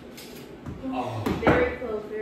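Voices of people in a room during a mini basketball shooting game, with one sharp knock about one and a half seconds in.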